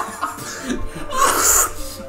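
A man coughs once, a short harsh burst about a second and a half in, over faint background music.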